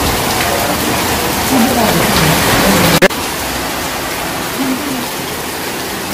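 Steady hiss of rain under faint, indistinct voices; about three seconds in a sharp click, after which the hiss continues a little quieter.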